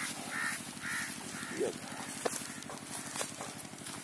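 Crow cawing: four short caws in the first two seconds, over a steady low, pulsing drone, with a few sharp clicks later on.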